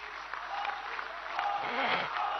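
A large audience applauding, the clapping growing louder through the pause.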